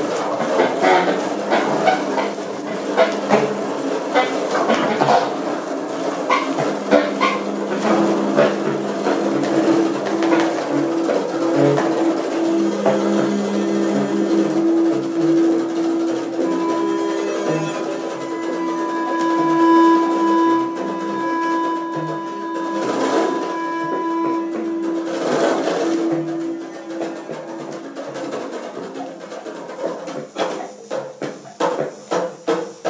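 Free-improvised music from saxophone, cello, percussion and synthesizer: a busy scatter of pops, clicks and short sounds at first, turning into long held tones, with a steady high pure tone held through the middle. It thins out and gets quieter near the end.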